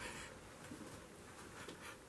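Quiet small room with faint, soft rustling and a brief hiss of breath or movement at the start.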